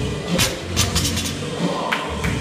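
A loaded barbell with bumper plates dropped onto a concrete floor after a clean, with the bar and plates clattering in a few sharp knocks, over background music with a steady bass line.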